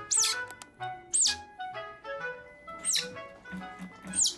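Background music with three loud, very high squeaks from a baby otter, each rising and then falling in pitch.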